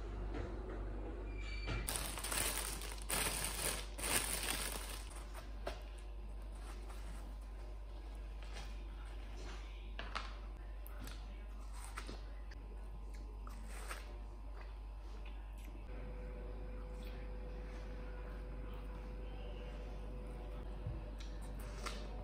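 Someone biting into and chewing pieces of fresh watermelon. A louder stretch of crunching, rustling noise comes a few seconds in, then quieter scattered wet clicks of chewing.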